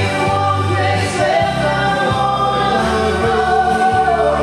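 Karaoke duet: a woman and a man singing together into microphones over a backing track, with long held notes over a steady bass line.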